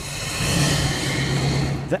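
Roadside highway sound: a steady rushing noise of traffic and vehicles, with a low engine hum underneath.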